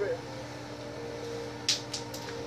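A steady mechanical hum with a few constant tones, like a room's ventilation fan, and a short hiss near the end.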